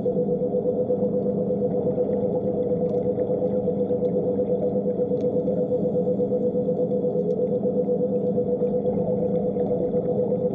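Diver propulsion vehicle's motor and propeller running steadily underwater: a constant droning hum at an even pitch, with faint scattered clicks.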